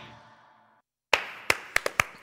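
The end of a children's group song dies away, a moment of silence follows, and then scattered hand claps start about a second in, about four of them, as applause begins.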